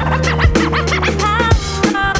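Boom-bap hip hop beat with a DJ scratching a record on turntables: quick back-and-forth scratch sweeps over a steady bass line and kick drum, with a short hiss near the end.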